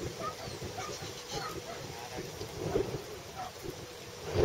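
Wind buffeting the microphone in an uneven low rumble, with faint scattered short sounds above it.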